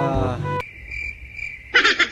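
A man's drawn-out word ends, then crickets chirp: a steady high trill, with a louder burst of rapid chirps near the end.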